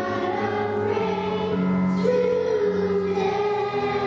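A group of children singing a song together with held notes over musical accompaniment.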